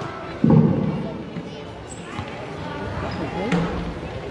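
Background chatter of many children in a gym hall, with one loud, low thud about half a second in.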